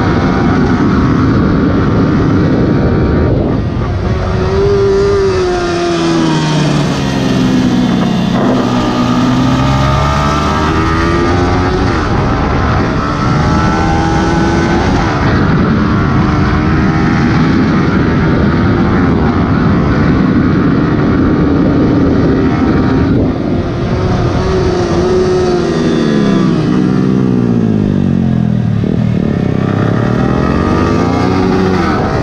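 Yamaha R15 V3's single-cylinder engine running at high revs under wind rush, its pitch dropping in steps as it shifts down and slows about four seconds in, then again near the end before climbing once more.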